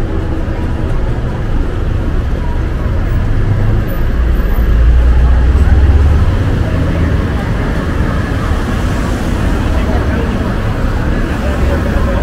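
Downtown street traffic: cars passing close by on the road beside the sidewalk, with a low engine and tyre rumble that swells to its loudest about five to six seconds in as a car drives past, then eases back to a steady traffic hum.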